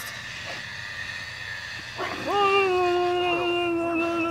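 A person's voice letting out one long, held wail: it starts about halfway through with a short upward swoop, then stays at one steady pitch.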